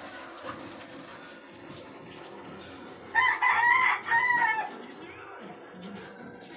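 A loud, pitched animal call in three rising-and-falling syllables, lasting about a second and a half, starting about three seconds in, over a low steady background.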